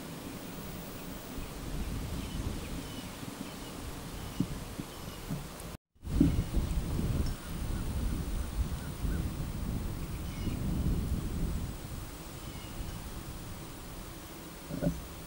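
Wind buffeting the microphone outdoors, an uneven low rumble that swells and eases, with faint bird chirps above it. The sound cuts out completely for a moment a little before halfway.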